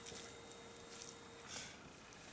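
Faint quiet outdoor background with a soft brief scuff of a gloved hand working loose compost about one and a half seconds in, over a faint steady hum.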